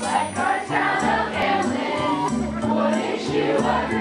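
A group of young voices singing a musical-theatre number together over instrumental accompaniment with a steady, pulsing bass line.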